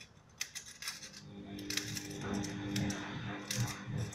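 Scissors snipping thin aluminium foil, trimming the excess from around the rim of a refilled aluminium coffee capsule: a quick series of short, crisp snips with light foil crinkling.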